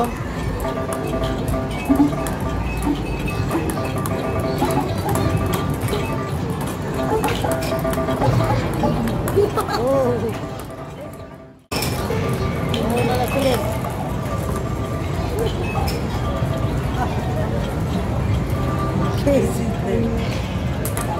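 Busy video-arcade din: electronic music and jingles from many game machines over background crowd voices, dropping out briefly about two-thirds of the way through.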